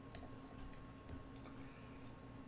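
A single sharp click just after the start, as a move is made in an online chess game on the computer, over a faint steady electrical hum.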